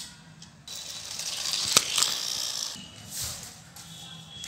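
Plastic toy doll being handled: a scraping, rattling stretch of about two seconds with one sharp click in the middle.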